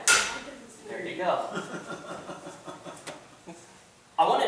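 A small blue bottle smashed with a hammer on a cinder block: one sharp crash right at the start, ringing briefly as it breaks.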